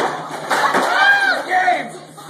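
A table tipped over with red plastic cups clattering onto a tile floor, then people yelling, the yells the loudest part.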